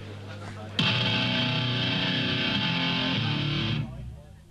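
Loud distorted electric guitar chord struck suddenly about a second in and held ringing, shifting once, then cut off sharply just before the end.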